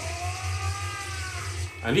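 Quiet anime soundtrack audio: a held, gently bending tone over a steady low hum.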